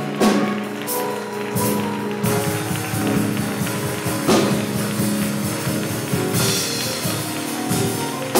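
Live church band playing praise music: held keyboard chords, with a drum kit coming in on a steady beat about two seconds in.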